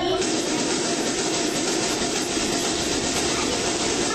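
An audience of children applauding, a steady unbroken clapping that fills the hall.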